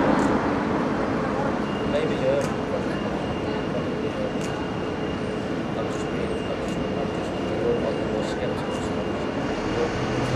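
Urban street ambience: a steady hum of traffic with faint, indistinct talking, and a faint, high, steady whine from about two seconds in.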